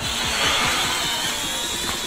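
Eachine E58 mini quadcopter's small motors and propellers whining steadily in flight, a high-pitched buzz.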